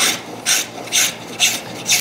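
Spokeshave cutting along the curved edge of a wooden board in short strokes, about two a second, taking off thin shavings to smooth the roughed-out arch into a fair curve.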